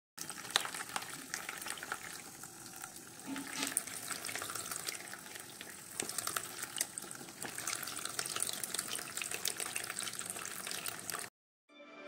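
A small homemade DC-motor water pump shooting a jet of water into a basin of water: steady splashing and spattering of droplets. The sound cuts off suddenly near the end.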